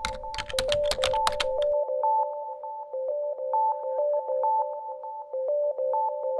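Rapid computer-keyboard typing clicks for the first second and a half, over light electronic music. The music is a repeating pattern of short, bouncing notes that runs on alone after the typing stops.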